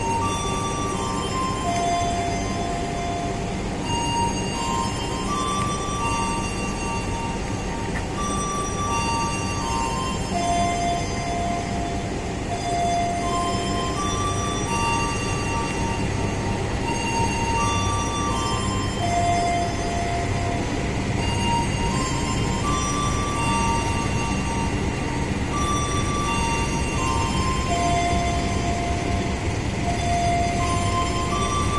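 Passenger train pulling slowly out of the station with a low, steady rumble, while a simple melody of single stepped notes plays over it throughout.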